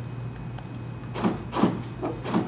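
Hand working the keyless-entry button on a 2015 Chevrolet Cruze LTZ's door handle, with the power door locks actuating to lock the car: a few light clicks, then several short knocks in the second half.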